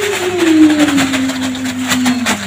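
A long, drawn-out vocal tone sliding slowly down in pitch, over the crinkling of a thin plastic shopping bag being pulled open.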